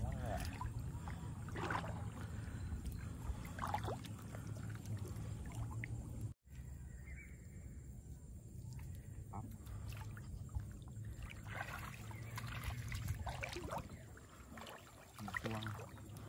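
Water sloshing and lapping around two people wading waist-deep in floodwater as they work a gill net, with a few faint spoken words. The sound cuts out briefly about six seconds in.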